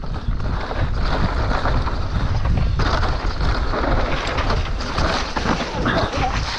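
Mountain bike descending a dirt trail at speed: wind rushing over the camera's microphone together with the rumble of knobby tyres over dirt and roots and the clatter of the bike over bumps.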